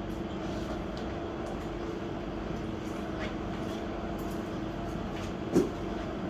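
Steady low machine hum with a constant faint tone, like a cooler or air-conditioning unit running, with a few faint ticks and a brief soft voice-like sound about five and a half seconds in.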